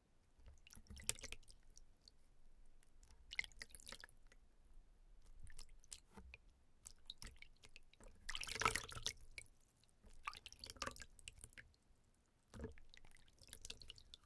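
Bare hands swishing and scooping water in a plastic basin, in short irregular splashes and drips, the loudest a little past halfway.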